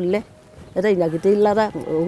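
A woman speaking in an African language, with a brief pause about a quarter of a second in before she goes on.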